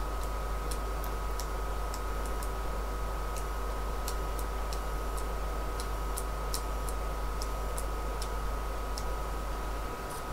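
Keys of a small 12-key keypad being pressed one at a time, giving soft, irregular clicks about one or two a second, as the encoder's outputs are tested key by key. A steady low hum and a faint high tone run underneath.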